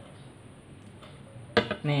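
Faint room tone, then a single sharp click about one and a half seconds in, followed by a short spoken word.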